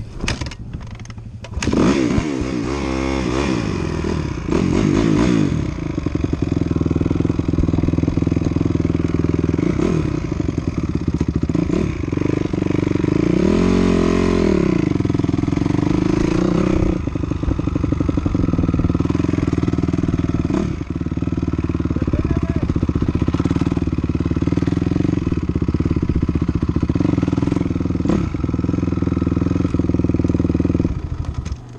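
Dirt bike engine running under way, revving up and down a couple of seconds in and again about halfway through, otherwise holding a steady pitch, with a few short knocks from the bike over rough ground.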